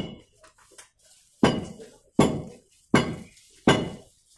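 Sharp metal-on-metal hammer strikes with a ringing tail: one at the start, then after a short pause four more at a steady pace, about one every three-quarters of a second, as on a building site.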